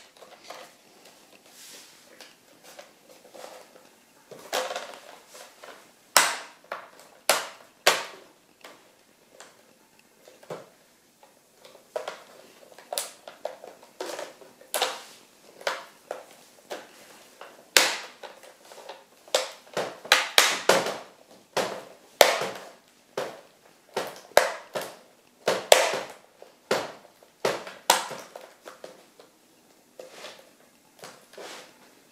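Plastic screen bezel of a Dell Latitude E6540 being pressed back onto the display lid, its clips snapping into place in an irregular run of sharp clicks and cracks. The clicks come most thickly through the second half.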